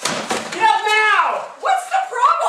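A wastebasket slammed upside down onto a desk: a thud and crash of spilling trash at the start, followed by a raised, shouting voice.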